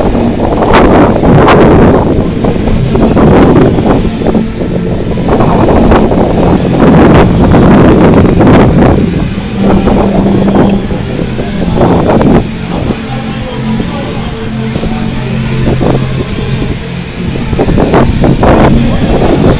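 Wind buffeting the camera's microphone in uneven gusts, with a faint low steady hum underneath in the second half.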